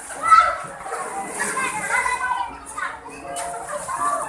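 A group of young children shouting and chattering at once while playing, several high voices overlapping, with the loudest shout just after the start.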